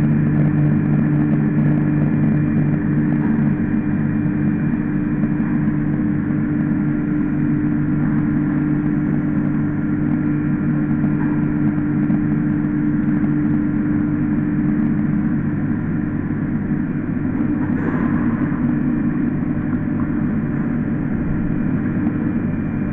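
PVS 125 H micro-cut emulsifier, a 15 kW fine-grinding machine, running with a steady, constant low hum while it processes hollandaise sauce and discharges it through its outlet pipe.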